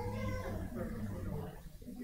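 Indistinct voices of people talking in the room, with a high, wavering voice at the start that trails off about one and a half seconds in.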